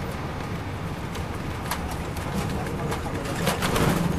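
Detroit Diesel Series 60 engine of an MCI D4000 coach, heard from inside the cabin, running with a steady low drone. Sharp rattles and knocks come through over it, once a little under halfway and in a cluster just before the end.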